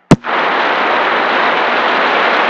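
A sharp click just after the start, then steady loud static hiss from a CB radio receiver with no voice on the channel.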